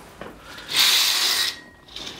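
A curtain pulled open along its rail: one slide, lasting just under a second, about a second in.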